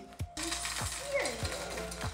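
Dry cereal pouring from a box into a bowl, a steady rattle starting about a third of a second in, over background music with a regular beat.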